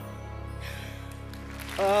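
A soft orchestral chord held steady from a live concert recording. Near the end comes a man's loud "Ah" of relief, falling in pitch.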